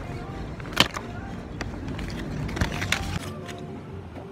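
Low rumble of road traffic that drops away about three seconds in, with a sharp click about a second in and a few more clicks near three seconds.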